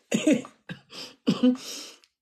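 A woman laughing in short breathy bursts that trail off near the end.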